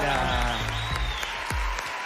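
Studio audience applauding, with a music bed underneath.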